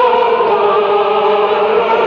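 A group of men and women singing a slow hymn together, holding long notes, with the melody stepping down to a lower note near the end.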